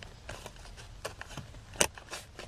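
Light plastic clicks and rattles from a stuck wiring harness connector and its locking clip as it is pushed and tugged on a car's blower motor resistor, with a few separate clicks and the sharpest one near the end.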